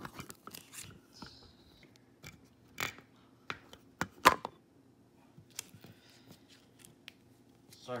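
Handling noise from a phone camera as it is picked up and set back in place: irregular knocks, taps and rubbing against its body. The sharpest knock comes about four seconds in.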